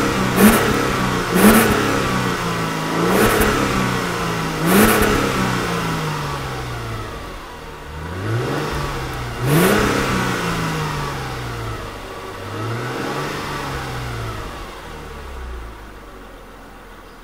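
Mercedes-Benz M112 V6 engine heard at the exhaust tailpipe, revved in about seven throttle blips. Each one rises quickly and falls slowly back; the first four come close together, the later ones are more spaced out, and the last is gentler.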